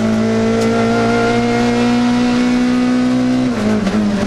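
Rally car engine heard from inside the cockpit, held at a steady high pitch in third gear, then dropping in pitch about three and a half seconds in as it shifts up to fourth.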